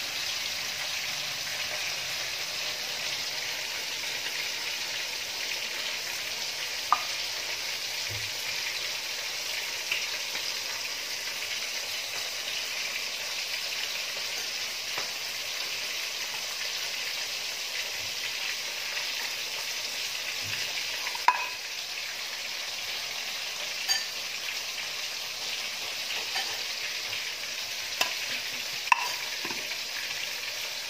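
A steady high hiss throughout, with a few light clicks and knocks of a plastic rice paddle against the pot and a plate as cooked rice is scooped out and served.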